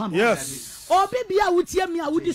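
A woman's raised, fervent voice in prayer, in short pitched phrases, with a long hissing "sss" sound in the first second.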